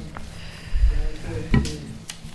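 Two dull thumps, the first about three quarters of a second in and the second about a second later, with low voices talking in the background.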